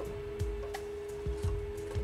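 A steady single tone from a President Jackson CB radio's speaker: the signal generator's test signal as the receiver demodulates it, used to show how far the radio has drifted off frequency. Soft knocks come several times as the metal cover is handled on the radio.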